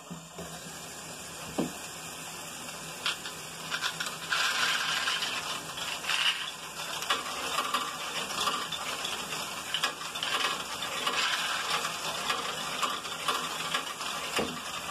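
Lego Technic Great Ball Contraption loop running: small electric motors driving plastic conveyor belts and a stepper, with many small plastic balls clattering through the modules. The clatter gets louder and busier about four seconds in.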